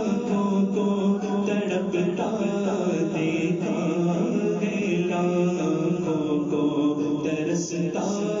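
Devotional chanting: a sung vocal line, melodic and unbroken, over a steady low drone.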